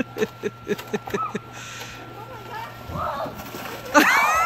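A person laughing in quick bursts, about four a second, for the first second and a half, then quieter scraping noise as a plastic sled slides down the snow pile, strongest about three seconds in.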